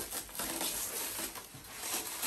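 Plastic packaging rustling and crinkling as it is handled, in a run of irregular small crackles and scrapes.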